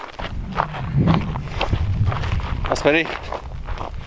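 Footsteps on rocky, gravelly ground, about two steps a second, over a low rumble.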